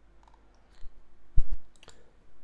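Computer mouse clicking: a few sharp clicks in the second half, the loudest about one and a half seconds in.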